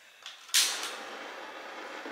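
Handheld butane gas torch lighting: a faint click, then the flame catches with a sudden burst about half a second in and settles into a steady hiss.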